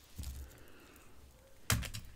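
Beaded bracelets being handled, the beads clicking against each other: a few faint clicks early on, then a louder quick cluster of sharp clicks near the end.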